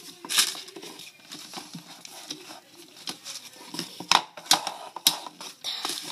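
Scattered light clicks, taps and rustles of small objects being handled on a table, with a few sharper clicks about four to five seconds in.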